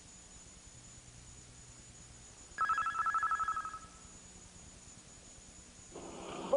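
A short ringing trill, like a telephone ring, lasting about a second: it starts abruptly a little over two and a half seconds in and fades out. Before and after it there is only faint tape hiss.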